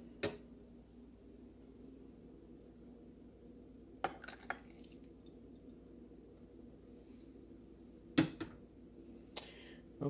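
Coffee crockery being handled: ceramic cups, a small glass jar and a teaspoon give a few separate clinks, one just after the start, a small cluster around four seconds, and the loudest around eight seconds, over a faint steady hum.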